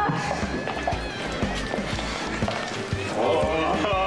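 Background music with a steady beat, with a crowd's voices over it that grow louder near the end.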